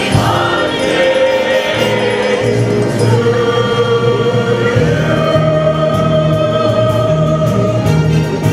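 A show choir singing in chorus through stage microphones, holding long notes over an accompaniment with a steady bass line. A new, higher sustained note comes in about five seconds in.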